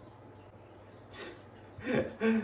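Quiet room tone, with a short breathy exhale about a second in and the start of a laugh just before the end.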